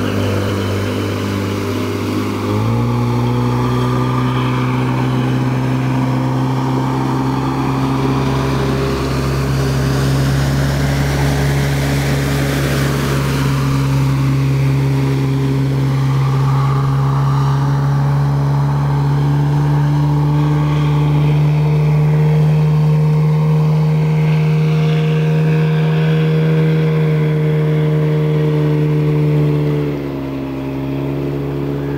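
Outboard boat motor running at speed with a steady drone. Its pitch steps up about two and a half seconds in, then climbs slowly as the boat holds high speed.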